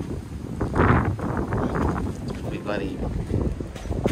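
Wind rumbling and buffeting on the microphone, with short bits of indistinct talk about one and three seconds in.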